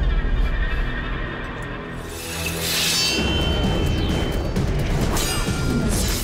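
Action-film soundtrack: a dramatic music score with fight sound effects, a sharp crashing hit about halfway through followed by a brief high ringing tone, and another hit near the end.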